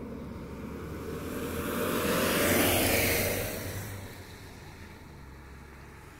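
A car driving past on an asphalt road: its tyre and engine noise swells to a peak about halfway through, then fades away.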